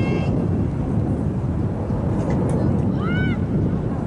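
Wind buffeting the microphone: a steady low rumble. A short high call from a voice on the field cuts through about three seconds in.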